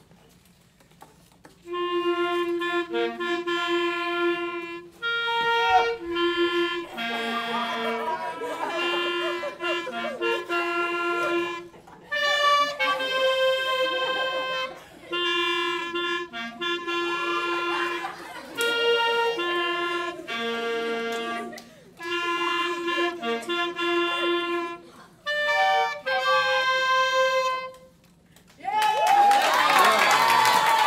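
A small group of clarinets with a flute playing a short piece in separate phrases of a few seconds each, with brief pauses between them. Near the end the playing stops and is followed by cheering and clapping.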